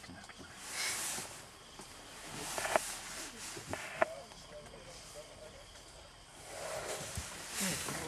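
Rustling and tearing of grass with a few sharp snaps as an African elephant plucks and eats grass close by. Low voices murmur faintly underneath.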